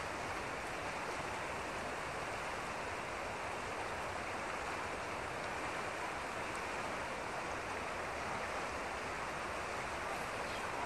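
Steady rush of river water flowing over a shallow gravel riffle.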